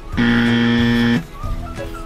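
A single steady buzzing tone, about a second long, that starts and stops abruptly, over light background music.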